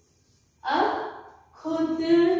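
A woman's short, breathy gasp about half a second in, fading over most of a second. Near the end her voice starts a held, steady-pitched vocal sound.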